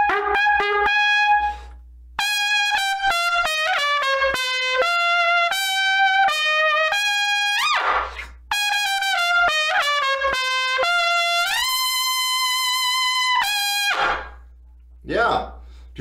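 Trumpet played loud and pushed on a Monette Classic B4LD S1 Slap mouthpiece: a run of short and changing notes, a breath about halfway, more notes, then one long held high note that stops about two seconds before the end. The tone has the bright edge that the player calls fire and sizzle.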